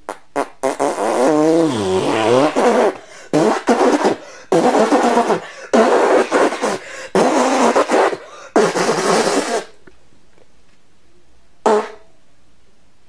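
A run of loud fart noises: about eight rasping blasts of varying length, some with a wobbling pitch, then a pause and one short blast near the end.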